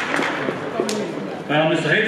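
Voices on a basketball court: faint talk at first, a single sharp knock a little under a second in, then a loud shouted call from a male voice starting about a second and a half in.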